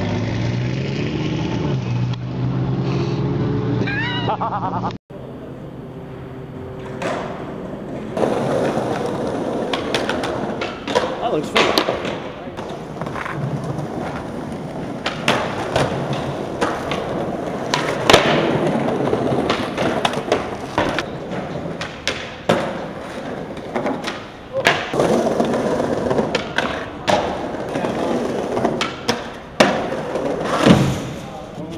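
Skateboard wheels rolling on pavement, broken by many sharp clacks and knocks of tail pops, board impacts and landings. For the first five seconds, before a sudden cut, a steady low engine drone.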